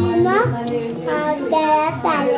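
A young child singing, holding notes that slide up and down in pitch.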